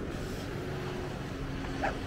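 A dog gives one short bark near the end, over a steady outdoor wash of wind and distant low hum.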